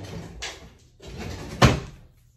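Two stretches of rustling, unpitched movement noise, with a single sharp knock near the end.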